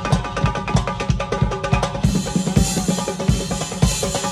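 Nağara, the Azerbaijani hand drum, played fast with a steady run of deep strokes and sharp slaps, over a band's melody.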